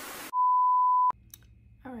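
Television stand-by sound effect: a hiss of static cuts to a single steady, loud test-tone beep that lasts under a second and ends abruptly with a click.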